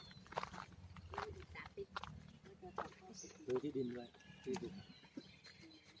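Several people talking in a conversation, with scattered short clicks.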